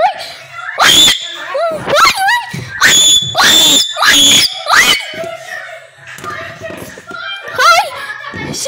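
Loud, high-pitched screaming in fright, several screams one after another from about one second in to about five seconds in, then quieter.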